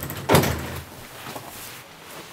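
An interior door banging once, about a third of a second in, with a short fading ring after it.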